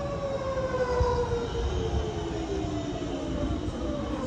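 GVB S1/S2 light-rail train's electric traction drive whining with a steady fall in pitch as the train slows past the platform, over the low rumble of its running gear.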